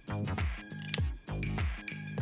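Background music with a steady bass line, and about a second in a single sharp metallic snap. The snap is the small metal mounting tab of an iPhone 7 Taptic Engine breaking off in side cutters after being rocked back and forth.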